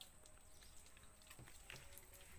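Near silence: faint outdoor ambience with a thin steady high whine and a few faint scattered clicks.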